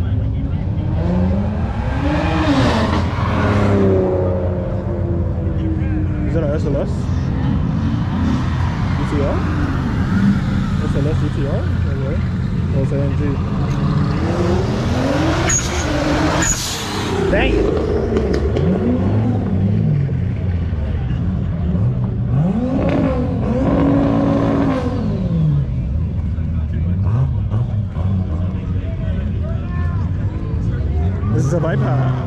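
Cars accelerating past one after another, each engine revving up and then fading, with the loudest pass about halfway through. Crowd voices run underneath.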